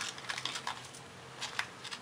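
Light clicks and scratches from hands handling a white sheet of material at the furnace burner: a cluster in the first second, then a short burst about a second and a half in.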